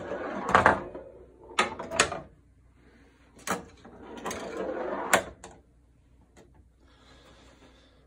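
Pinball machine in play: a steel ball rolling across the playfield between about five sharp mechanical clacks of flippers and the ball striking parts, in the first five seconds. The last couple of seconds are nearly quiet.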